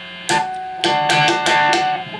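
Chapman ML2 electric guitar on its coil-split bridge pickup through a high-gain Mesa Boogie Dual Rectifier tube amp, playing a short run of distorted picked notes and chords that starts about a third of a second in.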